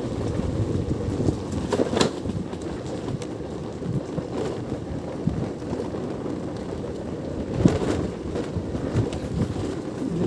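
Wind buffeting the microphone, a steady low rumble while moving along a rough dirt track, with a couple of sharp knocks, one about two seconds in and another later on.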